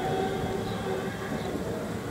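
Steady low mechanical rumble with a few faint held tones above it.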